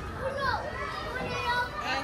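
Children playing at a playground: several high-pitched young voices calling and chattering over one another.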